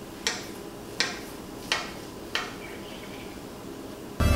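Kitchen knife cutting a rolled dough log, its blade tapping the granite countertop four times in an even sawing rhythm, about one click every 0.7 seconds.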